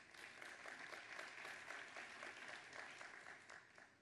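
Faint audience applause, an even patter of many hands clapping that dies away near the end.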